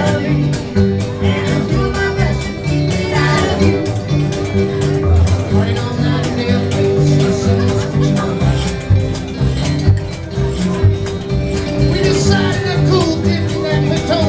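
Live folk-rock band playing: two acoustic guitars strummed and an upright bass plucked under a steady beat, with voices singing at times.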